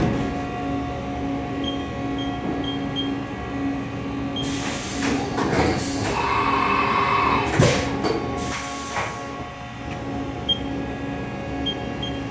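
Haas CNC vertical mill running with its doors shut: a steady hum, with a hiss of air about four seconds in, a whirring for a second or so after six seconds, a sharp clunk near eight seconds and a second hiss just after.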